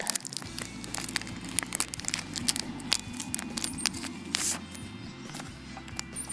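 A thin clear plastic packaging sleeve crinkling and crackling in quick irregular bursts as fingers pull it open, over steady background music.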